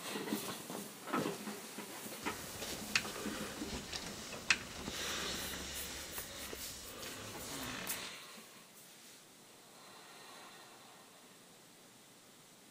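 Bedclothes rustling and shifting as a person gets up from bed, with a few sharp clicks, for about eight seconds before it fades to a faint hiss.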